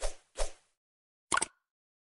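Short sound effects for a subscribe-button animation: two brief soft pops in quick succession at the start, then a sharp mouse-click sound a little past a second in, as a cursor clicks the subscribe button.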